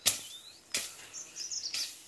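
Short, high bird chirps in the forest, with a few brief noisy swishes or rustles; the loudest is right at the start.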